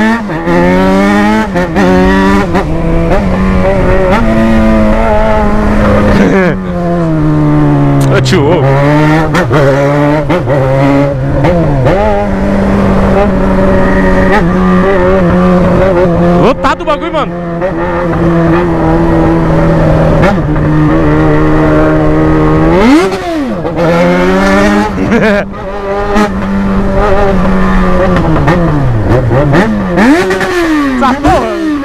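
Yamaha XJ6's inline-four engine running loudly under way at steady moderate revs, its pitch sagging and climbing again a few times as the throttle is rolled off and on. About two thirds of the way through there is a quick sharp rev blip; laughter is heard near the start.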